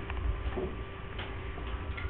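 Quiet room tone: a steady low hum with faint steady high tones, and a few light clicks at uneven intervals.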